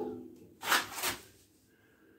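A wooden four-foot level knocked against the steel fork brackets: a short clunk with a low ringing tone that dies away, followed by two brief scraping rustles as it is shifted.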